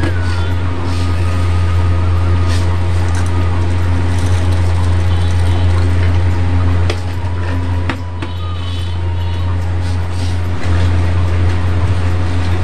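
A loud, steady low hum that dips briefly about seven and eight seconds in, with faint thin tones and a few light clicks above it.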